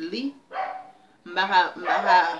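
A woman's voice in short, loud, unworded bursts, one at the start and two louder ones in the second half.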